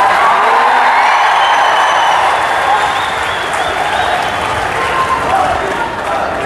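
Large crowd applauding and cheering, a steady dense roar of clapping and voices.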